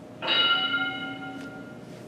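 Single bell chime from a workout interval timer, struck once about a quarter second in and ringing out over about a second and a half, marking the end of a timed interval.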